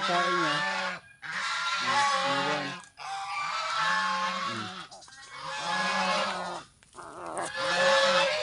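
Crow giving a string of long, drawn-out calls, about five in a row, each lasting a second or two with short breaks between.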